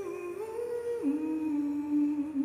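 A man humming a slow melody unaccompanied: a few held notes stepping down in pitch, the lowest held for about a second near the end.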